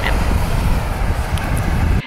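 Wind buffeting the camera microphone: a steady low rumble with a hiss over it.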